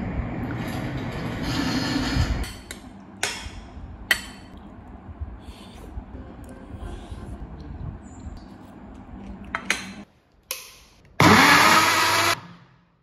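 Television programme sound at first, then a metal spoon clinking against a ceramic bowl during eating. Near the end a MyJuicer personal blender's motor starts up, loud and with a rising whine.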